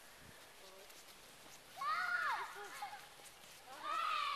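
A young child's high-pitched voice calls out, rising and falling in pitch, about two seconds in, and again near the end; in between, only quiet outdoor background.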